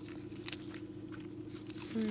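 Mouth sounds of biting into and chewing blood sausage: scattered soft clicks and smacks over a steady low hum.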